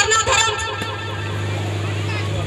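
A woman's voice amplified through a microphone and loudspeaker, breaking off about half a second in, after which a steady low hum carries on alone.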